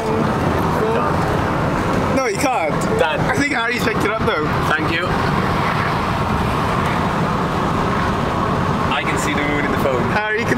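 Steady road and engine noise inside a moving van's cabin, with voices breaking in between about two and five seconds in and again near the end.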